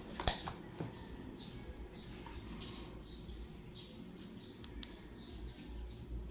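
A sharp click about a third of a second in, with a smaller one just after, as the ring light's power is connected and switched on. Birds chirp on and off throughout.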